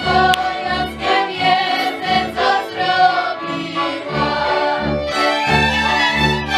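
A large ensemble of fiddles with a cello playing a folk tune together in unison, with the cello marking a steady beat about twice a second.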